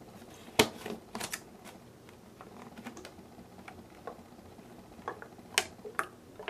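Hands handling a plastic bottle with a screw cap: scattered sharp clicks and taps of the plastic against a quiet background, the loudest about half a second in and again near the end.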